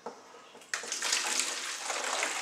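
Water pouring with a steady hiss, starting suddenly a little under a second in.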